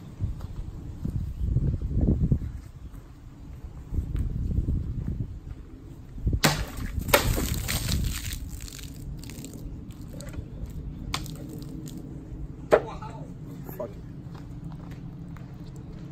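A sword blade slicing through a water-filled plastic jug on a cutting stand: a sharp crack about six seconds in, then a couple of seconds of water splashing and spattering, with scattered small knocks and another sharp one near the end.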